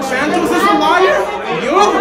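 Only speech: several voices talking over one another in a large, echoing room.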